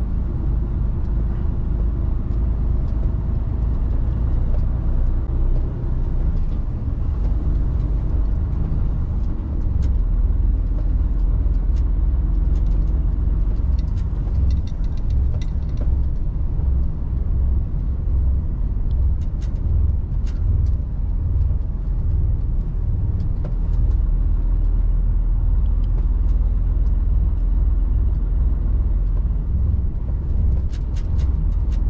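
Cab interior of a Mercedes Actros truck driving slowly over brick paving: a steady low engine and road rumble, with a few faint clicks and rattles scattered through it.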